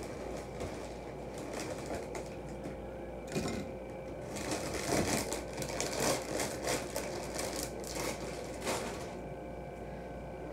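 Clear plastic bag crinkling and rustling as it is handled. There are a few light rustles at first, then dense crinkling from about four seconds in until shortly before the end.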